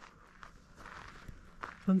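Faint footsteps on sandy ground: a few soft, irregular steps.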